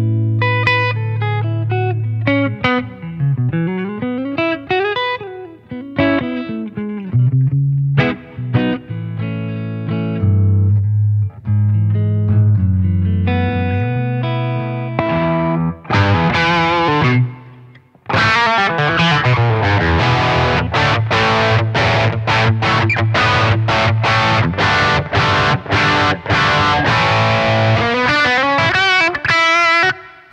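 PRS SE Starla electric guitar played through a Blackstar HT-5R MkII valve combo and heard from the amp's speaker-emulated DI output. It starts clean, with single notes and sliding pitches. About halfway through it switches to the overdriven channel, and the playing becomes distorted chords strummed in an even rhythm.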